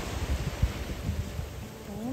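Wind gusting on the microphone over a steady wash of calm sea at the shore, with irregular low rumbles from the gusts.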